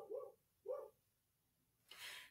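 Faint dog barking: three short barks, two in quick succession at the start and one a little under a second in.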